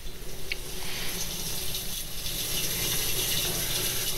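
Water running steadily into the empty tank of an Auto-Chlor AC-44 conveyor dish machine, splashing down its stainless steel walls as the fill solenoid opens on start-up, growing slightly louder.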